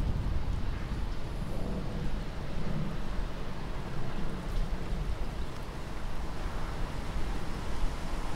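Steady low rumbling ambient noise, like wind or a distant rumble, with no music or beat.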